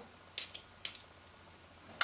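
Two short spritzes from a small perfume spray bottle, about half a second apart.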